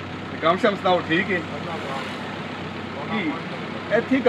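Steady engine and road noise of a passenger bus, heard from inside the cabin, under a few brief spoken words.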